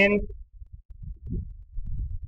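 Irregular low, muffled thumps and rumble with no clear pitch, following the tail of a spoken word.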